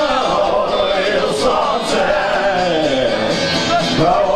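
A man singing into a microphone over his own strummed electric guitar, amplified live.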